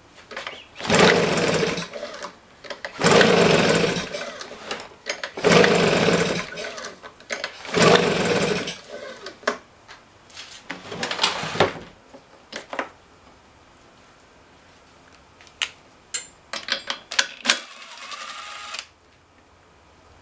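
Husqvarna 150BT leaf blower's 50 cc two-stroke engine being pull-started: five pulls on the recoil starter in the first twelve seconds, each a rattle of about a second as the engine cranks, with no sign of the engine catching. The owner suspects the engine might be flooded. Sharp clicks and handling noises of the blower follow.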